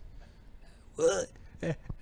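A pause in a man's speaking, with one short vocal sound about a second in and two fainter, shorter ones near the end, over low room tone.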